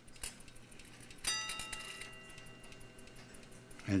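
Chelsea Ship's Bell clock striking one bell: a single strike about a second in that rings on for about two seconds as it fades. A few faint clicks come from the movement as the hand is turned.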